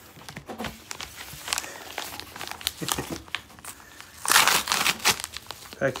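Yellow padded bubble mailer crinkling and crackling as it is handled, then a louder longer rip about four seconds in as the envelope is torn open.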